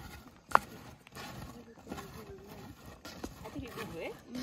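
Long wooden stirring sticks working a thick shea nut mash in a metal cooking pot, scraping and knocking against the pot. One sharp knock about half a second in is the loudest sound.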